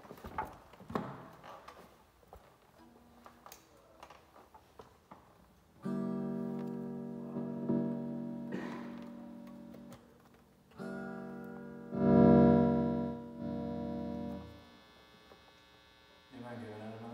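A few seconds of handling knocks and rustles, then four guitar chords strummed and left to ring out, the third the loudest and the last damped short.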